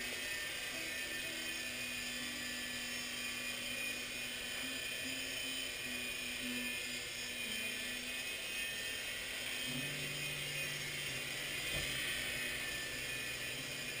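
Blade mCX coaxial micro helicopter's small electric motors and rotors running in a hover: a steady whine whose pitch steps slightly up and down, with a second, lower tone joining about ten seconds in. It is flying stably, the toilet-bowl wobble fixed now that the flybar ball joints move freely.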